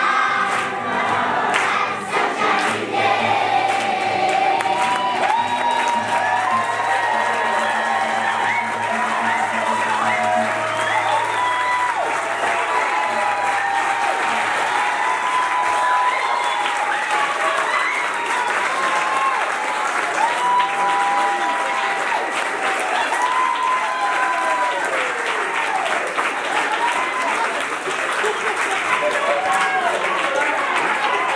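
Children's choir singing a lively song, with the audience clapping along and singing with them.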